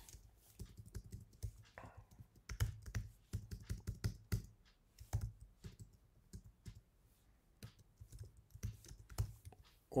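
Typing on a computer keyboard: irregular runs of key clicks, thinning out to a sparse lull past the middle before a few more keystrokes near the end.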